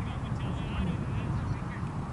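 Wind rumbling on the microphone, with a string of faint, wavering high calls over it that stop near the end.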